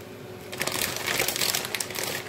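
Plastic packaging crinkling as a handful of grated cheese is taken out of it. It is a dense crackle that starts about half a second in and lasts about a second and a half.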